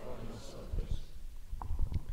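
A handheld microphone being handled and passed from one person's hand to another: a run of low thumps and rubbing noises, with a few sharp clicks in the second half.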